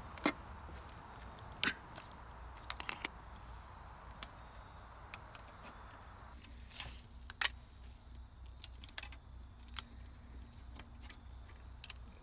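Scattered light metallic clicks and clinks of a hand wrench working the 10 mm valve-cover bolts on a Honda K24's aluminium valve cover, as the bolts are loosened by hand.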